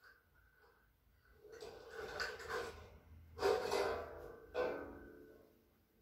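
A person's voice making breathy, drawn-out vocal exhalations, like sighs: three of them, each about a second long, starting about a second and a half in.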